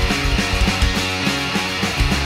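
Skate punk song from a rock band, a passage with a fast, even drum beat under electric guitars.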